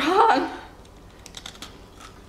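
A short spoken exclamation, then a quick run of faint, crisp clicks about a second in: crunching while chewing a thin Oreo cookie.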